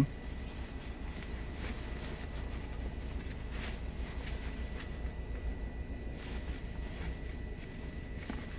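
Low steady rumble of a vehicle running, heard from inside the car cabin, with faint rustles of movement.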